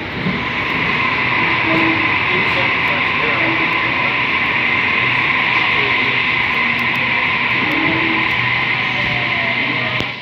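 Sydney Trains Tangara double-deck electric train moving along the platform close by, a steady running noise with a constant high hum over it.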